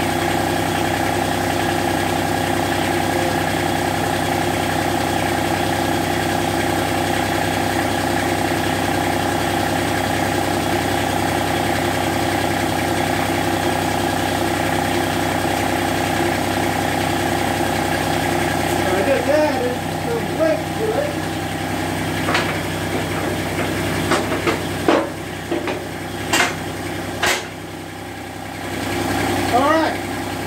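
Massey Ferguson GC1723E tractor's three-cylinder diesel engine idling steadily. From about two-thirds of the way in the sound turns uneven, with several sharp metal clanks as the fork plate is hooked onto the front loader.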